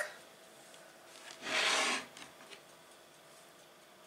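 A single short rubbing, scraping noise about a second and a half in, lasting about half a second, against quiet room tone.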